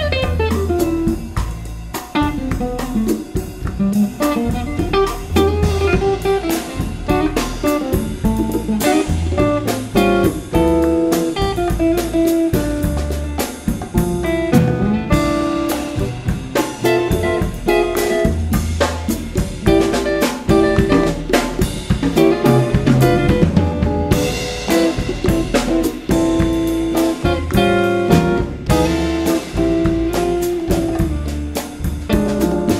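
Live jazz band playing an instrumental passage without vocals: guitar over acoustic bass, drum kit and hand percussion keeping a steady groove.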